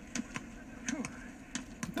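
Faint voices from a war film playing on a television, with several light, sharp clicks scattered through the moment.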